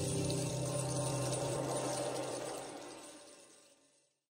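The last strummed acoustic guitar chord of a theme tune ringing on and dying away over about three and a half seconds.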